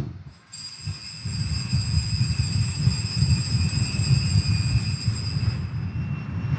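Altar bells rung without pause at the elevation of the chalice after the consecration, a steady high ringing that sets in about half a second in and stops just before the end. Under it runs a low rumble of background noise.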